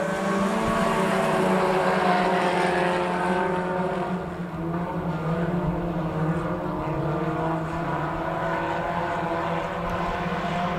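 A pack of IMCA Sport Compact front-wheel-drive race cars racing together, several engine tones overlapping in a steady note. It dips slightly in loudness about four seconds in.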